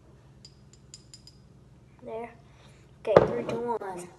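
Five quick, light clinks of a metal spoon against a glass hot-sauce bottle as a drop is poured. Then a short vocal sound, and near the end a louder wordless vocal sound lasting about a second as the spoon goes into the mouth.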